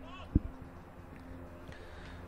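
A football kicked once for a corner: a single short, dull thud about a third of a second in.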